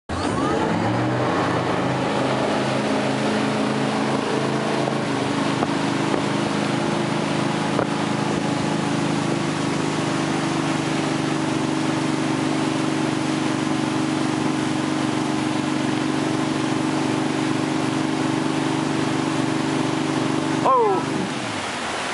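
A MasterCraft X-series tow boat's inboard engine pulls hard from low speed, its pitch rising over the first two seconds as the wakeboarder is hauled up. It then runs steadily at speed over a rush of water and wind, and the engine note drops away about a second before the end as the throttle is cut for a fallen rider.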